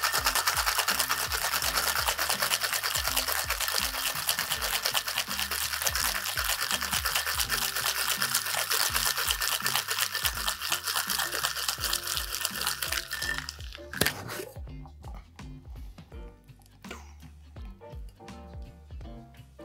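Ice rattling hard and fast inside a metal tin cocktail shaker during a vigorous shake of an egg-and-cream eggnog. The shake stops about 14 seconds in, over background music.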